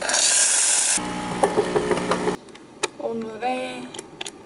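Coffee beans pour from a paper bag into the clear hopper of a small electric coffee grinder with a dense rattling hiss. The grinder motor then runs with a steady hum and a crackle of beans for about a second and a half and stops abruptly.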